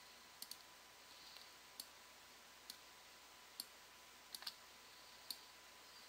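Near silence broken by a handful of faint, scattered computer mouse clicks, about eight over the six seconds.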